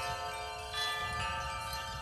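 Chimes ringing in sustained, overlapping tones, with new notes struck a little under a second in and again just after a second.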